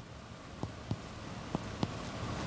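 Chest percussion on a man's back: a finger striking the middle finger laid flat between the ribs, giving about five soft, quick taps at uneven intervals. She is working down the back during a held full inspiration to find where the resonant note over the lung turns dull at the diaphragm.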